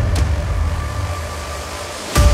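Cinematic sound-design hit at the start, then a low, steady rumble with a hiss over it that slowly fades under a title card.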